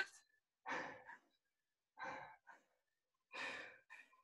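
A woman breathing hard from exertion: three heavy exhales, about one every second and a half.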